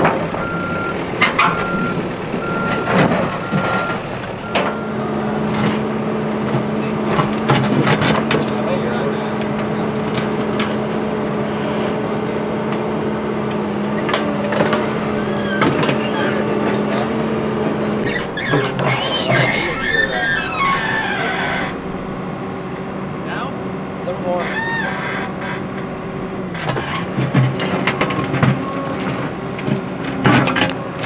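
Caterpillar 420F backhoe loader's diesel engine running under load while it scoops rocks and dirt, with knocks of rock throughout. Its reversing alarm beeps for the first few seconds, and the engine note shifts about halfway through as the backhoe arm starts digging.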